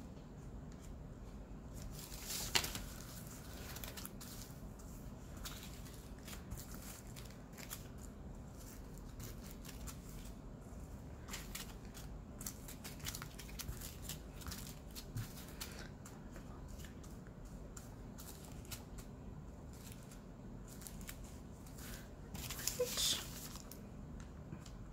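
Small plastic zip bags of diamond-painting drills being handled and set down, with light crinkling and scattered small clicks. A louder rustle comes about two seconds in, and another near the end as the paper instruction sheet is slid across the table.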